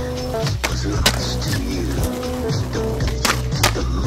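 Music soundtrack playing over skateboard sounds: the wheels rolling on concrete and several sharp clacks of the board and trucks hitting the pavement and ledge.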